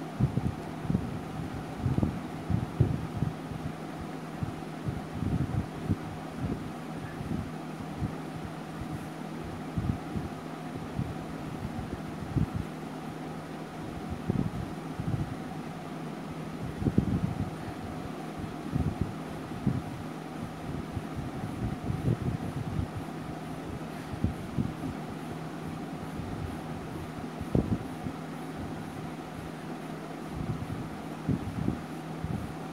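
Brown colour pencil being rubbed over drawing-book paper, heard as irregular soft rubs and bumps over a steady background hum.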